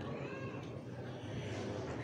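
Quiet room tone of a crowded mosque hall with a low murmur, and a faint, short, high rising-then-falling call about a quarter second in.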